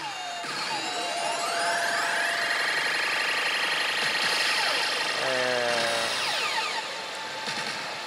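Electronic sound effects from a Zombie Land Saga pachislot machine during a reel-alignment challenge: a long rising whoosh while the reels spin, a short pitched chime a little past five seconds in, then falling sweeps as the reels are stopped.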